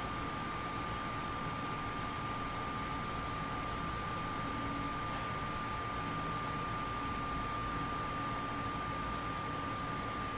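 Room air conditioner running: a steady hiss with a thin constant tone over it.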